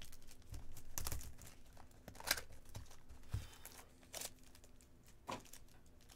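Clear plastic shrink wrap crinkling and tearing as it is pulled off a trading-card hobby box, in irregular crackles with the loudest a little over two seconds in.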